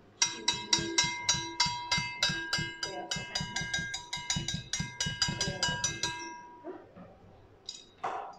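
A wire whisk beating chocolate mixture in a stainless steel bowl, the whisk knocking against the bowl about four to five times a second so the bowl rings with each stroke. The whisking stops about six seconds in.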